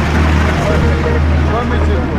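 A deep, loud, sustained bass drone, with a voice heard over it.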